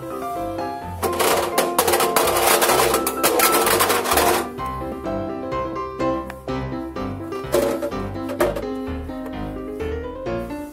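Background piano music over a dense clatter of a hard plastic toy washing machine knocking around inside a front-loader's steel drum as it turns. The clatter starts about a second in and stops after about three and a half seconds, and two single knocks follow later.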